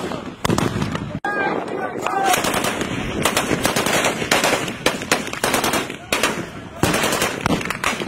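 Heavy gunfire: many sharp shots and rapid bursts of automatic fire, one after another, echoing over the town.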